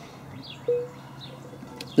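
Birds calling outdoors: a short, steady low note that starts suddenly about two-thirds of a second in and fades, with faint high chirps just before it.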